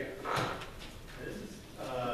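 A short knock or scrape about half a second in, against low indistinct talk in the room; a voice starts up again near the end.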